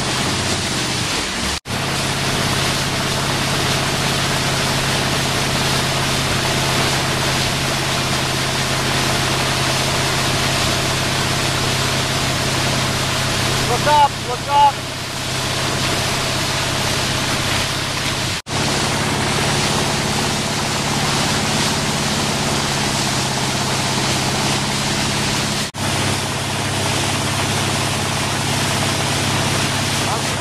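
Steady rush of wind and water spray over the steady drone of the tow boat's motor as it pulls a water skier at speed, with a brief shout about halfway through. The sound drops out for a split second three times.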